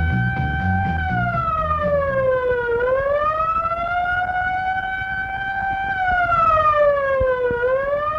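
Police siren wailing, its pitch sliding slowly down and back up twice. Rock music with a heavy beat plays under it for the first two seconds or so, then drops out.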